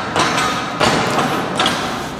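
Two thuds of a sandalled foot kicking the metal frame piece of a weightlifting platform to seat it snugly against the insert, about two-thirds of a second apart.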